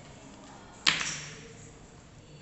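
A single sudden sharp hit about a second in, with a short ringing tail that fades over about half a second.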